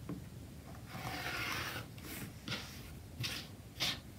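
Rotary cutter rolled once along an acrylic ruler, slicing through several stacked strip sets of quilting cotton on a cutting mat to even up their left edge: a scratchy hiss lasting about a second. A few short rustles and taps follow as the ruler and trimmed fabric scraps are handled.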